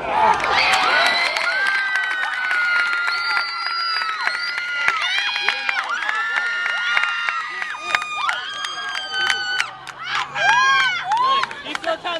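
Crowd of spectators cheering and shouting, many voices at once. It breaks out suddenly and stays loud throughout.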